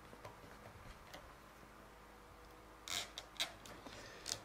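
Hand saddle-stitching leather clamped in a wooden stitching clam: a few faint ticks, then, about three seconds in, a brief scrape of thread drawn through the stitching holes followed by a sharp click.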